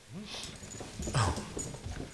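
A small dog whining in a few short whines, the first rising in pitch.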